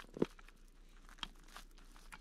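Faint plastic clicks and handling noise from a small battery-powered camping lantern as its top is fitted over four freshly charged AAA batteries, with one sharper click just after the start and a couple of fainter ticks later.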